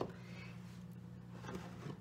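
Faint, steady low hum with a short click at the very start: room tone between bouts of speech.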